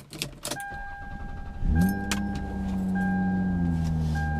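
Car keys jingle and click in the ignition, and a steady electronic warning chime sounds. About a second and a half in, the car's engine starts and settles into a steady idle, dropping slightly in pitch near the end.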